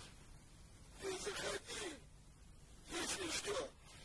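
Two short breathy vocal sounds from a cartoon character, each just under a second long and about two seconds apart, with a wavering pitch.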